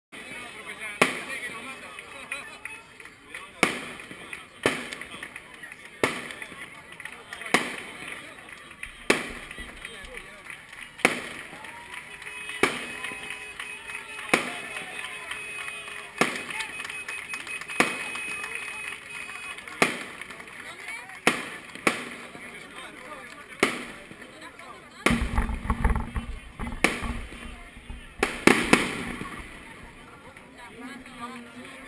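A string of sharp bangs, one every second or two, over the murmur of a roadside crowd, with a burst of low rumble a little before the end.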